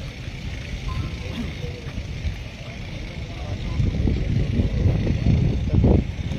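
Wind buffeting the microphone: an uneven low rumble that grows stronger in the second half, over faint voices.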